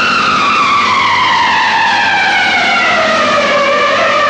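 A single whistle-like tone gliding slowly and steadily downward in pitch for several seconds over a rushing noise: a falling-glide sound effect in the film soundtrack.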